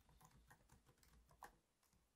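Faint typing on a computer keyboard: a quick run of soft key taps, one a little louder about one and a half seconds in.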